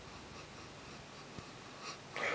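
A man sniffing the aroma of a glass of ale held under his nose, faint, with a short sniff near the end and a small click about midway.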